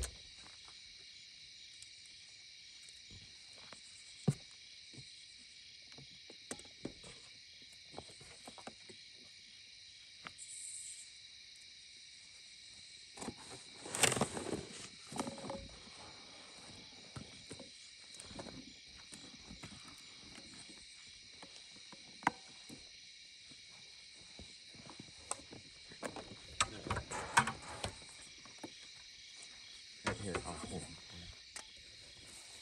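Crickets chirring steadily, with scattered knocks and clinks as glass canning jars of tomatoes are handled and set into a large pot of hot water for canning. The clatter is loudest about 14 seconds in and again in a cluster near the end.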